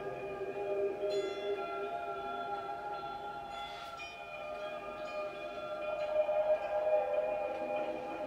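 Electric guitar played through effects pedals, with sustained, bell-like notes layered into an ambient drone. New notes ring in about a second in and again around four seconds.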